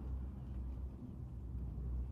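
Steady low rumble of an idling engine.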